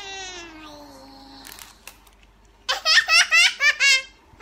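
A drawn-out voice gliding down in pitch, then, past halfway, a young girl's burst of quick, high giggling laughter, the loudest sound here.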